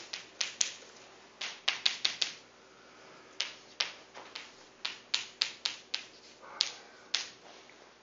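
Chalk on a blackboard while a formula is written: an irregular run of sharp taps as the chalk strikes the board, with short scratches between them.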